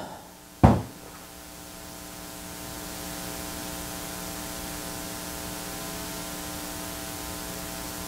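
Steady electrical mains hum with hiss, growing a little over the first few seconds and then holding level, after a single short knock just under a second in.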